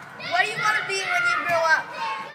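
Children's voices, high-pitched and excited, in talk or shouting too unclear for words to be made out.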